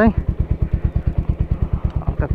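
Motorcycle engine idling with a steady, even low putter of about twelve beats a second.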